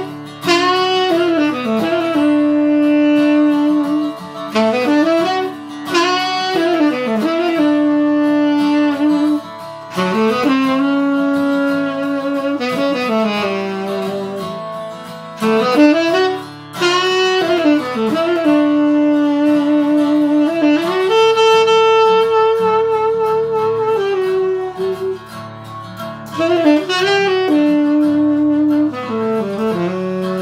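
Tenor saxophone playing a melodic solo over a backing track with guitar: phrases of notes that slide up and down, each coming to rest on a long held note.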